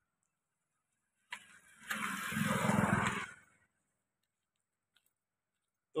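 A motor vehicle engine heard once and briefly, from about a second and a half in until about three and a half seconds in, with silence before and after.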